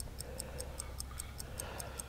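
A pocket watch ticking close by, fast and even at about five ticks a second.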